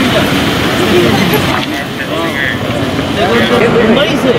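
Men's voices talking and calling out over a loud, steady outdoor rumble. One voice is making a public announcement, with other voices overlapping it.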